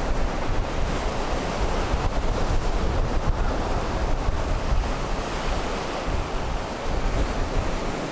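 Ocean surf breaking steadily on a sandy beach, mixed with wind buffeting the microphone in a low, gusty rumble.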